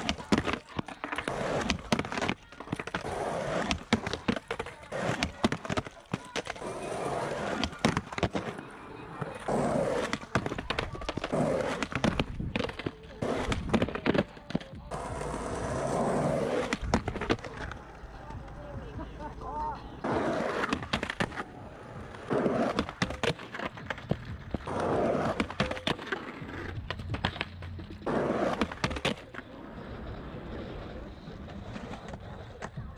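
Skateboard rolling on rough asphalt and grinding a concrete ledge, with many sharp clacks from the tail popping, the trucks hitting the ledge and the board landing, over repeated frontside Smith grind attempts.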